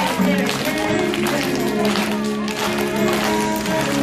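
A song with recorded accompaniment, held chords over a steady beat, and a woman singing live into a handheld microphone in a large, echoing hall.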